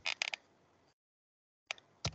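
Laptop keyboard keystrokes: a quick run of three or so key clicks at the start, a pause, then a single click near the end as a word is deleted and retyped.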